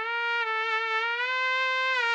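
Synthetic trumpet tone generated by Tone Transfer's DDSP machine-learning model, rendering a vocal recording as trumpet: one long held note, steady in pitch.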